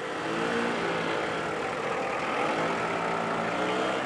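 Small engine of a three-wheeled Piaggio Ape mini-truck running steadily as it drives past.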